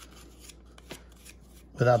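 Faint handling noise: a few light clicks and rustles as hands turn over the plastic ear cups of a pair of over-ear headphones stripped of their ear pads.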